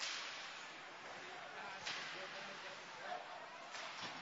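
Sharp cracks of ice hockey play in an echoing rink, from stick, puck and boards: one at the start trailing off in a brief hiss, then two more, about two seconds apart. Faint crowd voices underneath.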